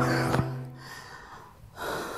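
A held chord of background music fades out in the first second. Near the end comes a short, breathy gasp from a woman who is about to vomit: the start of her gagging.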